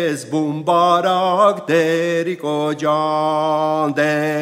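A man singing an Armenian folk dance-song solo, without accompaniment, in short phrases with brief breaks, holding one long steady note near the end.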